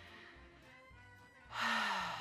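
A woman's long, heavy, exasperated sigh, starting about a second and a half in, over soft background music.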